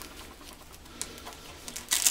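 Faint rustling of tactical work pants' polyester-nylon fabric being handled at the waistband, with a light click about a second in and the rustle growing louder near the end.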